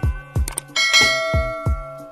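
Intro music with a steady thumping beat, and a bright bell-like chime sound effect that rings out about three-quarters of a second in, the notification-bell ding of a subscribe animation.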